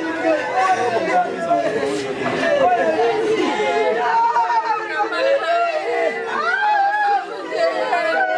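Several women's voices overlapping at a wake, talking and crying out in grief, with long drawn-out, sliding wails among the chatter.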